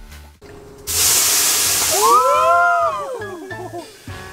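A loud burst of steam hissing off the sauna's hot metal barrel stove, starting suddenly about a second in and fading over a couple of seconds. Near the middle it is joined by a drawn-out cry that rises and falls in pitch.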